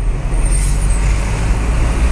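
Inside a moving car's cabin: steady low rumble of engine and tyres on the road.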